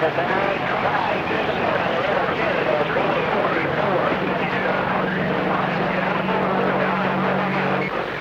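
CB radio receiving distant skip stations on channel 28: a loud, noisy wash of static with garbled, overlapping voices too weak to make out. A steady low hum joins about halfway through and cuts off abruptly just before the end, as one transmission drops out.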